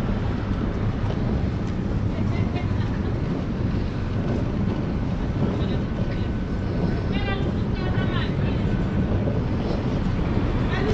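Steady low rumble of wind buffeting the microphone on an open airport apron, with faint voices of other passengers about seven to eight seconds in.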